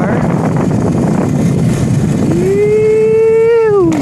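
Wind rushing over the microphone with the ride noise of a moving e-bike. About two seconds in, a person lets out one long, drawn-out wordless shout that holds for about a second and a half and drops in pitch as it ends.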